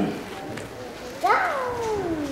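A single high-pitched cry about a second in: it jumps up in pitch and then slides slowly down, lasting about a second, much higher than the man's speaking voice.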